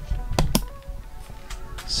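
Background music, with two sharp clicks about half a second in from plastic car window visors being handled.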